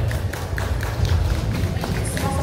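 A rock band's amplified stage gear between songs: a steady low rumble from the amps and drums, with a few faint taps and clicks.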